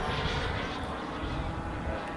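Distant, steady whine of an E-flite A-10 RC jet's electric ducted fans as it flies overhead with its landing gear down, over a low rumble.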